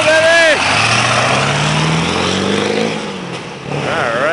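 Ford F-250's 7.3 Power Stroke turbo-diesel V8 accelerating hard as the lifted truck pulls away to roll coal. Its pitch climbs over the first three seconds, then the sound fades as it moves off.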